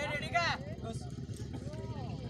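Raised voices of players and onlookers at an outdoor kabaddi match: a loud, high-pitched shouted call in the first half-second, then fainter voices, over a steady low rumble.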